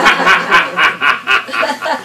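A person laughing loudly in a run of quick, repeated bursts, about four a second, tailing off slightly near the end.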